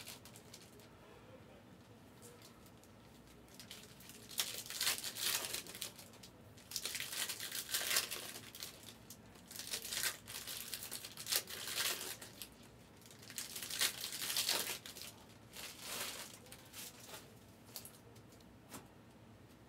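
Wrapped trading-card packs crinkling as they are handled and taken out of their boxes, in repeated bursts that begin a few seconds in.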